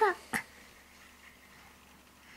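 A toddler's brief high-pitched vocal sound, falling in pitch, right at the start, then one light click and faint room tone for the rest.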